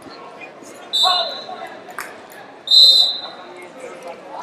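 Two short referee's whistle blasts, about a second in and again near three seconds, the second louder, over the constant murmur of a large, busy hall.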